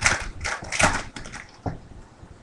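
Foil wrapper of a trading card pack being torn open and crinkled: a run of crackling bursts through the first second or so, then a single sharp tap.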